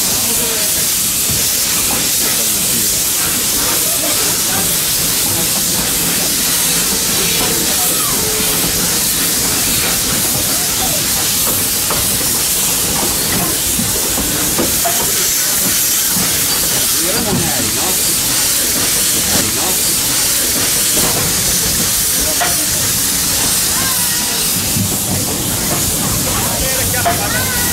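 Narrow-gauge steam locomotive hissing out steam steadily as the train pulls away, heard from an open carriage behind it.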